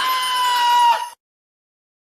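Sound sting of the Dickhouse production logo: one high-pitched sound held on a nearly steady pitch, dropping slightly before it cuts off suddenly about a second in.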